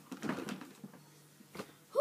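Handling noise as a large toy wardrobe is moved about: rustling and a short knock about one and a half seconds in, with strained breathing from the effort.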